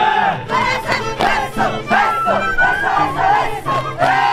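A group of people shouting together in short rising-and-falling cries, over Andean carnival music of violin and harp.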